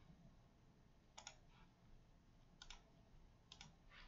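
Faint computer mouse clicks in quick pairs, three times about a second apart, over near silence.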